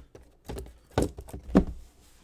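Sealed cardboard trading-card boxes being set down and moved on a table: three dull thunks about half a second apart, the last the loudest.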